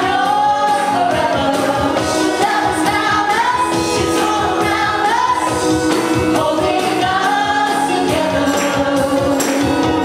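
A group of women singing a worship song together into microphones, over music with a steady beat.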